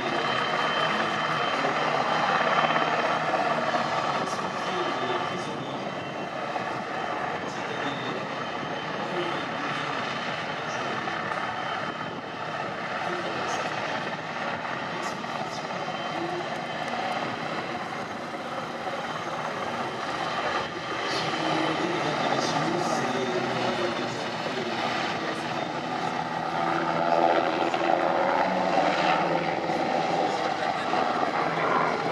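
NH90 military helicopter's twin turbines and rotor running steadily, growing louder near the end as it lifts off close by.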